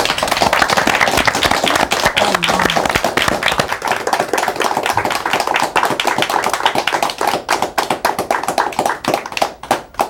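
A small audience applauding, with many hands clapping at once; the clapping thins out to scattered single claps over the last few seconds and stops.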